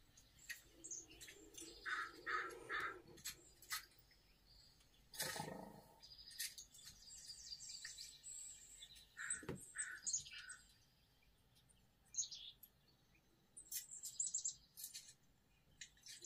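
Small songbirds chirping and calling in short, scattered notes and brief trills, played faintly through a television's speakers.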